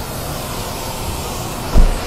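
Steady, noisy din of a large exhibition hall, with a single loud, low thump near the end.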